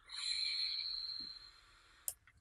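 Air rushing through a Vapor Giant V5S clone rebuildable tank atomizer with its airflow fully open: a breathy hiss with a thin high whistle that fades out after about a second and a half. It buzzes a little, which the reviewer puts down to the unpolished edges of the airflow holes.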